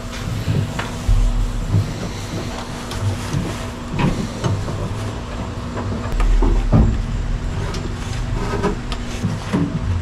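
Hands working a heavy battery cable down around an engine bay: scattered knocks, rustles and dull bumps over a steady background hum.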